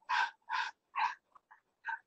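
Dog barking repeatedly, a string of short sharp barks about two a second, the later ones weaker.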